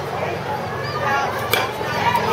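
Spectators talking and calling out, with one sharp crack of a bat hitting a pitched baseball about one and a half seconds in.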